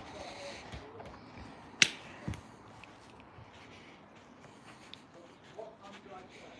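A single sharp knock about two seconds in, followed half a second later by a softer thud, over a faint background.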